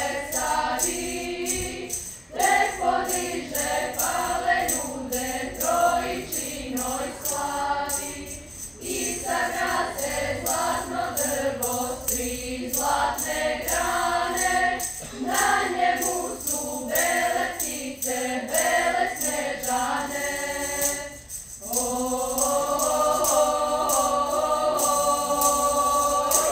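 Girls' church choir singing without accompaniment, in phrases separated by short breaks, ending on one long held chord.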